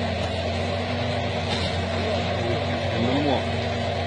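Engine of the crane hoisting a car out of the water, running steadily under load with a constant low hum. A man's voice comes in briefly about three seconds in.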